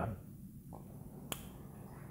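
A pause with faint room noise and a single sharp click about a second in.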